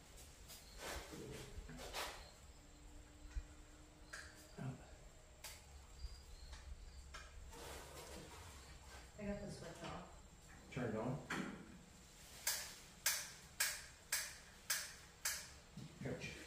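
Scattered clicks and knocks of hands and tools working in a car's engine bay, ending in a run of about seven sharp clicks, roughly two a second.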